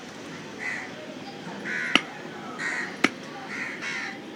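Two sharp chops of a cleaver through raw chicken into a wooden stump chopping block, about a second apart. Repeated short harsh caws of crows sound throughout.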